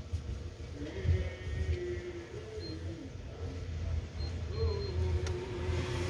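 Low engine rumble with a wavering whine above it that shifts up and down in pitch.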